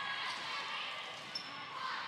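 Indoor volleyball rally: the steady hum of the hall with faint knocks of the ball being passed and set, and a brief high squeak a little past the middle.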